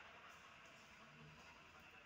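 Near silence: room tone.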